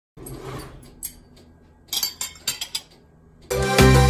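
Metal tongs clinking against an aluminium sheet pan, one click about a second in and a quick run of sharp clinks around two seconds in. Music then starts loudly near the end.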